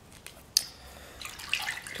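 A sharp click about half a second in, then a hand splashing and stirring water in a plastic tub, mixing the drops of anti-stress solution into it.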